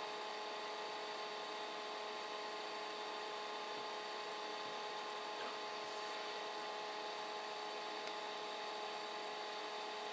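Steady hum of a computer's cooling fans, a whine of several held tones over a soft hiss, unchanging throughout.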